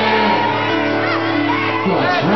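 Loud party-band music with a crowd shouting and singing along.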